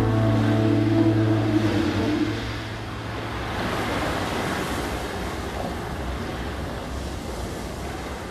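The music ends on a held low chord that dies away in the first two seconds or so, leaving a recorded sound of ocean surf washing, which swells near the middle and slowly fades.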